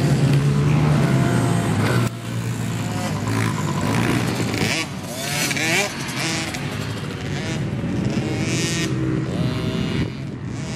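Small Honda CRF110 dirt bikes' single-cylinder four-stroke engines revving up and down on the track, their pitch repeatedly rising and falling. The sound drops suddenly in level about two seconds in.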